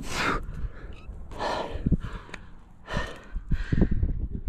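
A climber's heavy breathing as he jams up a granite crack: about four hard exhales, roughly every second, with short knocks and scuffs of hands and shoes against the rock.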